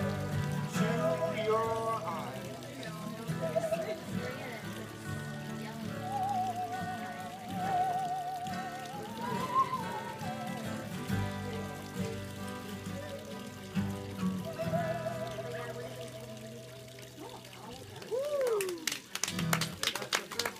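Musical saw bowed with a wide, even vibrato, its singing tone wavering and sliding up and down over strummed acoustic guitar chords. Near the end the playing stops, the saw slides down in pitch once, and a few people start clapping.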